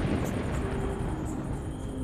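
Steady hiss of rain with a low rumble underneath: night thunderstorm ambience.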